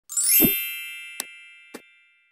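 Logo-intro chime sound effect: a quick rising shimmer swells into a bright ringing ding that fades slowly, with two short ticks about a second in and again half a second later.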